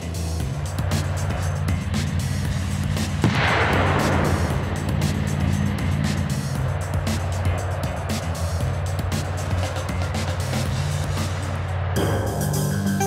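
Background music with low sustained notes and a steady pulse; about three seconds in, a loud rushing whoosh swells and fades over about a second.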